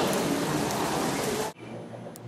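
A steady hiss of background noise that cuts off abruptly about one and a half seconds in, leaving quiet room tone.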